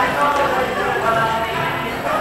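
Several people's voices talking and calling out over one another in a room.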